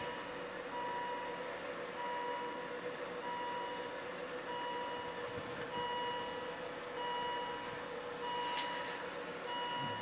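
Car's electronic warning chime beeping over and over, about once a second, with a steady hum underneath.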